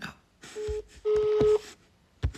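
Phone on speaker placing an outgoing call: a steady ringing tone, one short beep and then a longer one, with a couple of low thuds beneath.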